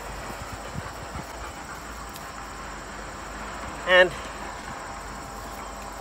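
A hand-held metal dibble rod pushed down through plastic mulch into the soil to make a planting hole, heard as a few faint soft knocks and scuffs. Under it is a steady faint insect chirr.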